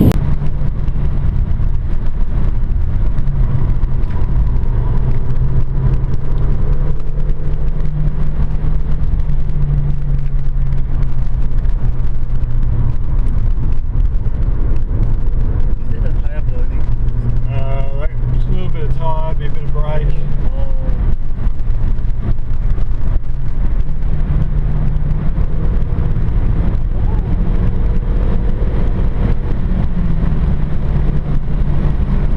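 VW Polo's engine running at steady, moderate revs, heard from inside the cabin together with road noise, its pitch rising slightly near the end.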